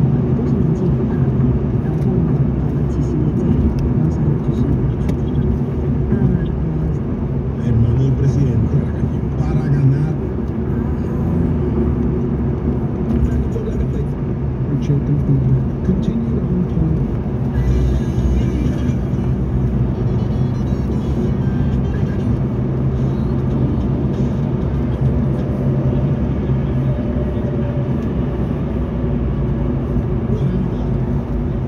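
Steady road and engine noise heard inside the cabin of a car moving at highway speed.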